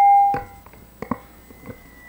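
Microphone feedback through the hearing room's sound system: a steady ringing tone that fades out about half a second in, then a few faint clicks and a fainter, higher ring. It is heard as a microphone fault.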